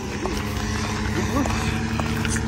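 A small engine drones steadily at one even pitch, typical of a propeller engine running in the air.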